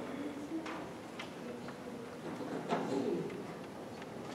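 Faint murmur of voices in an auditorium before a band plays, with a few soft clicks and knocks. The sharpest click comes about two-thirds of the way through.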